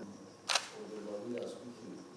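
A single sharp camera shutter click about half a second in, over low background chatter.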